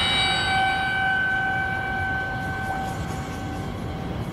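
A steady held tone, with fainter higher tones above it, over a low rumble; the tone fades out about three seconds in.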